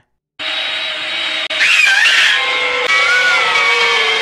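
A chainsaw running as it saws into a woman lying on a table, heard as an old film soundtrack. It starts about a third of a second in and gets louder about a second and a half in. A wavering high-pitched tone rises over it just before halfway, and again briefly near the end.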